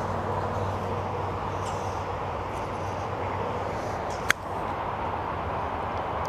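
A single sharp click about four seconds in: a golf club striking a ball off an artificial-turf hitting mat, over a steady background hiss.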